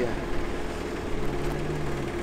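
A steady low hum of an idling engine, with a second, lower tone joining about a second in.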